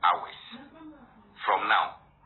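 A man's voice in two short bursts: a sharp exclamation at the start that trails off, and a brief phrase about a second and a half in. The sound is thin, with its top cut off.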